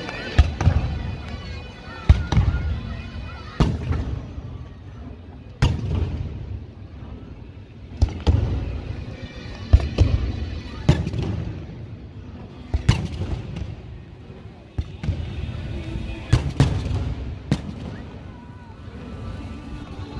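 Aerial fireworks bursting overhead: about a dozen sharp bangs at irregular intervals of one to two seconds, each trailing off in a low rumble.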